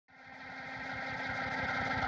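Electronic track fading in from silence: a synthesizer drone with steady high tones over a fast, even low pulse, getting louder throughout.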